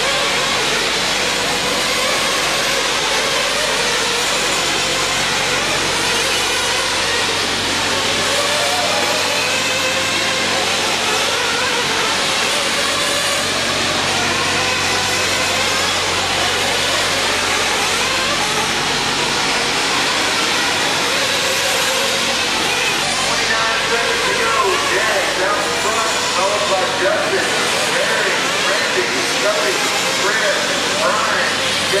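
Several small nitro engines of 1/8-scale RC racing truggies buzzing and revving up and down as they race around an indoor dirt track, heard through an echoing hall full of crowd voices.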